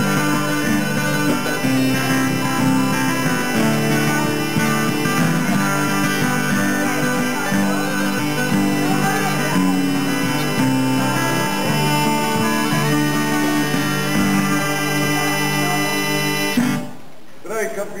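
Bagpipes playing a tune over their steady drones, with an acoustic guitar strummed along; the music stops suddenly near the end.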